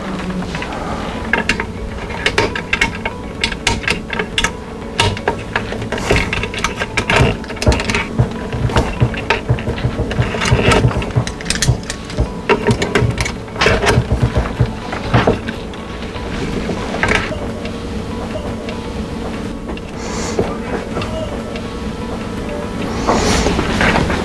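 ECG lead wires being handled and snapped onto the posts of a 1-to-10 ECG adapter: many small plastic and metal clicks and knocks, thinning out in the last third, over a steady hum.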